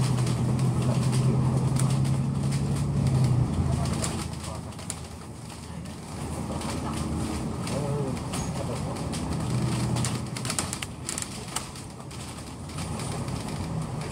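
Double-decker bus's diesel engine heard from inside the cabin: a steady hum that drops in pitch and eases off about three and a half seconds in, then picks up again, with a burst of rattling about ten seconds in.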